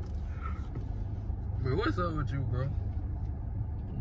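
Steady low rumble inside a car cabin, with a voice heard briefly about halfway through.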